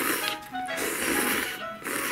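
Instant ramen noodles being slurped up in long, hissy pulls: one ending just after the start, a second lasting about a second, and a third beginning near the end. Light background music plays underneath.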